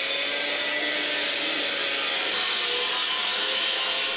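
Electric angle grinder cutting into a steel heating-main pipe: a steady whining, hissing grind that holds at one pitch.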